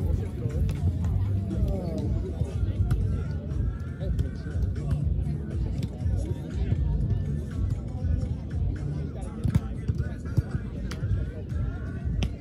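Music playing over a hubbub of people talking, with a couple of sharp knocks in the second half.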